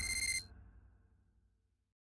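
Tail of an intro-animation sound effect: a fading low rumble and a short, bright electronic chime with several ringing pitches, both cutting off about half a second in.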